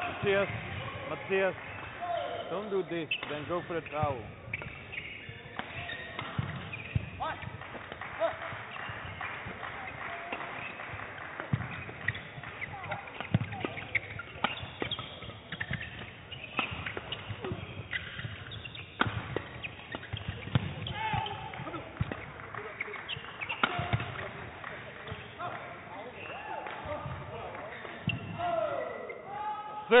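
A men's doubles badminton rally, with repeated sharp racket hits on the shuttlecock and players' footwork on the court, over voices in the hall.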